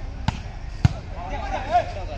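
A volleyball struck twice during a rally, two sharp smacks a little over half a second apart, the second louder, followed by players shouting.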